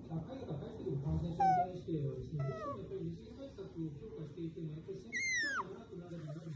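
A pet otter vocalizing while being stroked: continuous low, rapid chattering broken by three high squeals that fall in pitch. The first is short, about one and a half seconds in. The next comes about a second later. The last and loudest, a longer falling squeal, comes about five seconds in.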